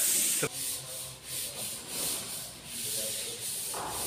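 Rhythmic rubbing strokes, about three a second, from hand work on a plaster false ceiling, heard as a steady high hiss that rises and falls with each stroke.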